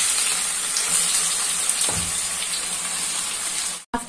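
Sliced onions frying in a pan of hot oil: a loud, steady sizzle that slowly eases off and cuts off abruptly just before the end.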